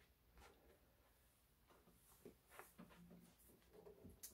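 Near silence: room tone with a few faint knocks and rustles from an acoustic guitar being handled and a wooden chair being sat in.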